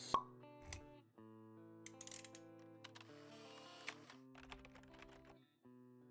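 Quiet intro jingle of sustained synth notes for a logo animation, opening with a sharp pop and scattered with light clicks and tinkling strokes.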